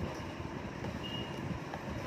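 Steady background noise of a running electric fan.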